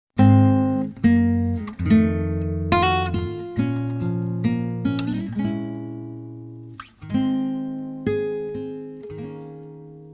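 Acoustic guitar playing a slow song intro: chords struck one after another, each ringing and fading, with the last chord left to ring out near the end.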